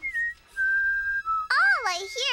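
Whistling: a few steady held notes, each a step lower than the last, followed near the end by a voice sliding up and down in pitch.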